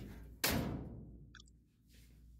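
A single sharp hammer blow on a homemade tapping tool set against the sheet-metal top edge of a car fender, about half a second in, dying away over about a second. The blow drives down the fender's top edge, which sat too high against the door.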